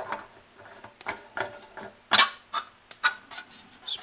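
Scattered light metallic clicks and clinks as a Greenlee 1½-inch knockout punch, with its die and draw bolt, is fitted by hand through the pilot hole in a metal front panel. The loudest clink comes about two seconds in.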